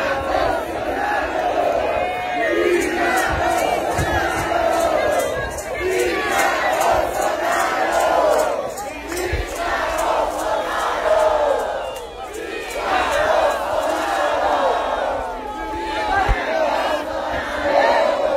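Large crowd of supporters shouting and cheering, many voices at once, swelling and falling in waves.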